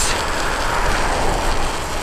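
Steady rush of riding a bicycle at speed on a wet road: wind over the microphone mixed with the hiss of studded bicycle tyres rolling on wet pavement.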